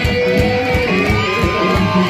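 Live band music: electric guitar over a drum kit keeping a steady beat, with long held notes.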